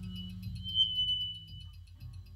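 Live improvised experimental music from a bass-and-drums duo: held low notes that shift about two-thirds of a second in, under a high ringing tone that swells to its loudest about a second in and then fades.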